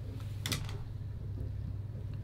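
Quiet room tone with a steady low hum, and a brief rustle about half a second in from earbuds being handled and pushed into the ears.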